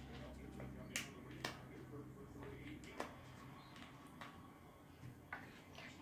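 A handful of light, sharp clicks and taps, about five scattered through, of small items handled against a hard tabletop, over a quiet room.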